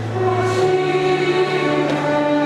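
Mixed church choir singing a hymn anthem with chamber orchestra accompaniment. A low held bass note steps up in pitch a little under a second in.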